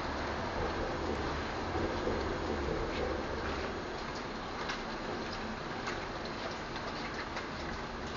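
Steady rain hiss with raindrops ticking irregularly, the drips becoming frequent from about three seconds in. A low rumble sits under the rain during the first three seconds.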